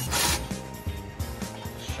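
A short burst from a cordless ratchet near the start, loosening a bolt to remove the power steering reservoir, then quieter faint ticking. Background music plays throughout.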